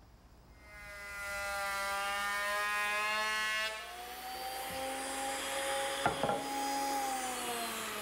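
Thickness planer running up to speed, then about four seconds in its pitch shifts and a rougher cutting noise sets in as a rough teak board feeds through the cutterhead, with a couple of knocks near the end. The wood is hard and tough on the planer blades.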